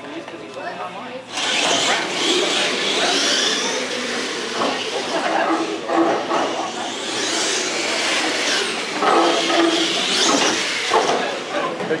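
RC Clod Buster monster trucks launching and running down a drag strip: a sudden rush of motor and drivetrain noise starts about a second and a half in and carries on steadily, with onlookers' voices mixed in.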